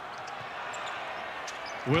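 Game sound from a basketball court: steady background arena noise with a few faint knocks of the basketball bouncing on the hardwood floor.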